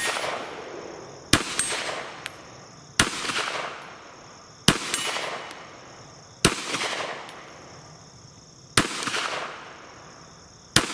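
Ruger American Pistol in 9mm fired in slow single shots: five sharp reports spaced about one and a half to two and a half seconds apart, each with a short ringing tail.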